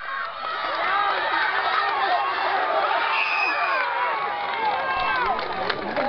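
Crowd of spectators shouting and cheering, with many voices overlapping and no single voice standing out.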